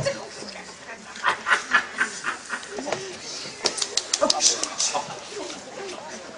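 Indistinct voices of actors talking on an open-air stage, with a short run of laughter about a second in.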